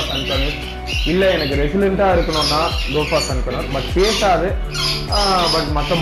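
A voice talking over background music with a steady beat.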